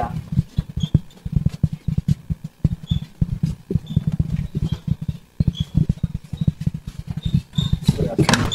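Handling noise from a handheld phone jostled against clothing as it moves: a dense, irregular run of short low thumps and rubbing, with a few faint high blips.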